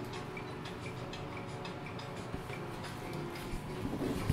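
Steady light ticking, about four ticks a second, inside a small elevator car.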